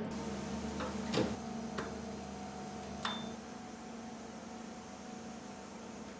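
Steady electrical hum of laboratory equipment in a small room. Four sharp clicks and knocks fall in the first three seconds, the last followed by a short high beep.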